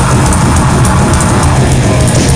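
Live metal band playing loud, with distorted guitar and a drum kit going at speed, rapid drum and cymbal hits packed close together.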